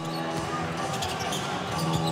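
A basketball being dribbled on a hardwood court, with short sharp strokes, over arena crowd noise and a steady held tone.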